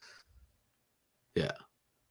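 Near silence broken once, about a second and a half in, by a short spoken "yeah" from a man.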